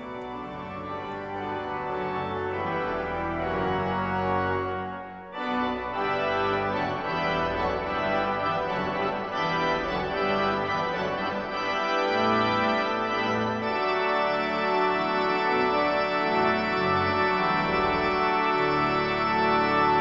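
Pipe organ playing slow, sustained chords, with a short break about five seconds in and a brighter, fuller sound from about fourteen seconds on.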